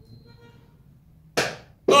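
A faint quiet stretch, then about a second and a half in a single sudden sharp hit that fades away over about half a second.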